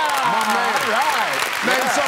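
Studio audience applauding, with excited voices shouting over the clapping.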